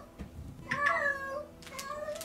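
A woman mumbling something indistinct under her breath in a small, high voice, in two short soft bits about two-thirds of a second in and again near the end.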